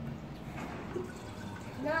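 A drink being poured from a jug at the table, faint under the room's low background sound; a voice starts speaking near the end.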